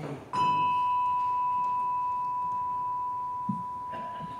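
A single bell struck once to mark the elevation of the consecrated host: one clear, pure ringing tone that sounds on and slowly fades.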